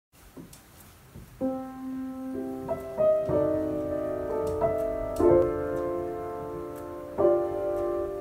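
Solo piano playing sustained chords in C, the first notes coming in about a second and a half in after a near-quiet start with a few faint clicks.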